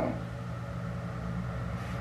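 A steady low hum with no distinct events.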